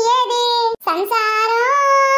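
A high-pitched cartoon voice holding two long drawn-out sing-song notes, the first cut off sharply before a second in and the second held to the end.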